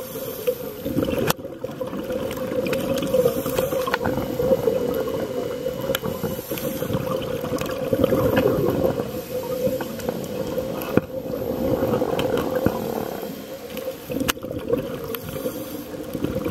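Underwater noise picked up through a dive camera's housing: a steady low drone with watery bubbling that swells and fades every few seconds, with a few sharp clicks.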